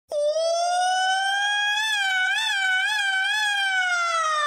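A single bright, siren-like tone that starts abruptly, rises gently in pitch, wavers a few times and then slowly glides down.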